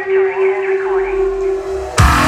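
Interlude in a hip hop dance-routine mix played over the sound system: a processed, radio-like voice over a steady held tone, with a low rumble coming in about halfway through.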